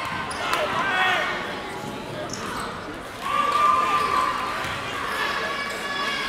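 Basketball game sound on a gym's hardwood court: the ball bouncing, shoes squeaking, and the voices of players and crowd in the background.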